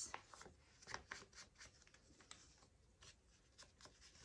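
Faint dabbing and brushing of a foam ink-blending tool around the edges of a folded old book page, with paper rustling as the page is handled; a string of short soft taps.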